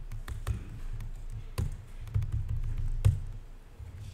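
Typing on a computer keyboard: a run of irregular key clicks, two of them louder, about a second and a half in and three seconds in.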